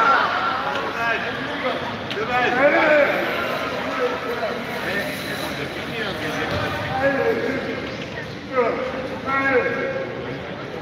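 Voices calling out and talking across an indoor sports hall, over the steady background noise of the hall, with the loudest calls near the start, around three seconds in and near the end.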